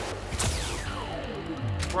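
Cartoon summoning sound effect: a long electronic sweep falling steadily in pitch, with a short low rumble near the end, over steady background music.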